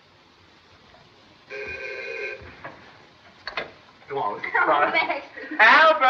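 An electric bell or buzzer rings once, a steady tone lasting under a second, about a second and a half in. A couple of clicks follow, then voices rise near the end.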